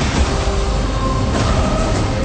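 A loud, dense rumble with a heavy low end and no clear beats, with a few faint held musical tones underneath.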